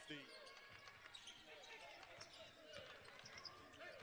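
Near silence: faint gym sound of a basketball bouncing on a hardwood court, with scattered faint knocks.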